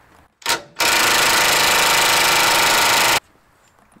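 Makita cordless impact wrench spinning up briefly, then hammering steadily on a rusted suspension nut for about two and a half seconds before stopping suddenly. The rust-seized nut does not break loose.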